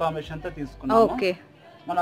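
Speech: a person's voice saying a few words, with one drawn-out vowel about a second in, then a short lull before speech resumes.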